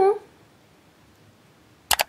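A woman's softly spoken word trails off, then near silence, broken near the end by one short, sharp click.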